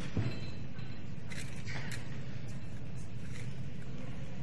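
Steady low hum of hall ambience and recording noise, with a single dull thump just after the start and faint crackling rustles about a second and a half in.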